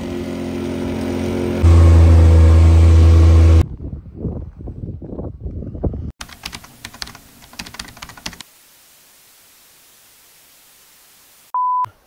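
Quad bike (ATV) engine running steadily, getting much louder with a heavy low rumble for about two seconds, then cutting off. After it come rough irregular noises and a run of sharp clicks, a quiet stretch of faint hiss, and a short steady beep near the end.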